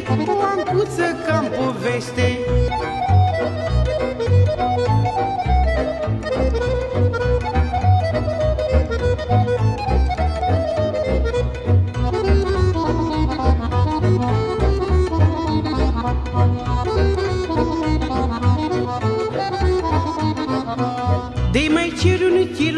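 Instrumental break in a Romanian lăutărească song: a lăutar band with the accordion playing the melodic lead over a steady pulsing bass and rhythm accompaniment, a fiddle alongside. The singing voice comes back in right at the end.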